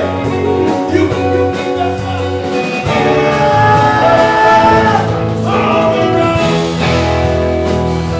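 Live rock band playing: electric and acoustic guitars, electric bass, keyboards and drum kit together, with a lead line of sliding, held notes over the top.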